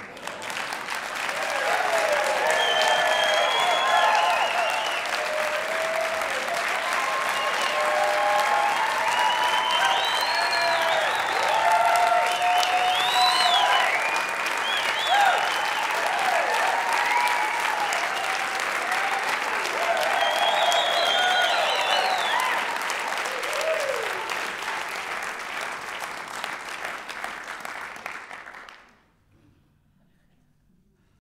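Live audience applauding and cheering, with many scattered whoops and shouts over the clapping. It fades down from about three quarters of the way in and cuts off near the end.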